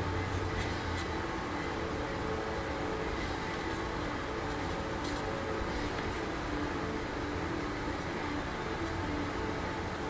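Steady mechanical room hum, with a few faint clicks as the plastic model-kit fuselage parts are handled.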